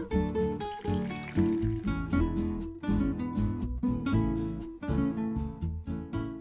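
Background music of plucked acoustic guitar notes in a steady rhythm. Hot water pouring into a glass measuring jug is faintly heard under it near the start.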